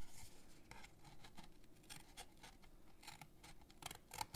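Small scissors snipping through cardstock: several faint, irregularly spaced short cuts.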